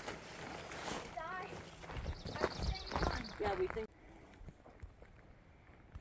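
Faint, indistinct talking with footsteps on a dirt trail; about four seconds in, the sound cuts off abruptly to near quiet.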